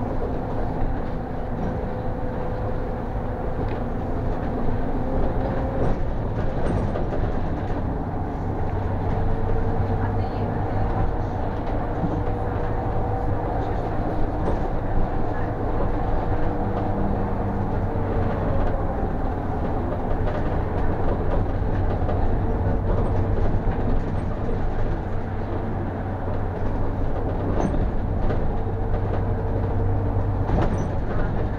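City bus driving, heard from the driver's cab: a steady engine and driveline hum with road noise, and a faint whine that shifts slightly in pitch as the speed changes.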